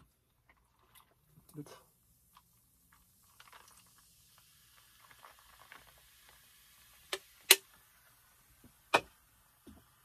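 Ginger ale poured from a can into a plastic cup, with a faint fizzing hiss from the carbonation. It is followed by three sharp knocks in the second half, the loudest about seven and a half seconds in.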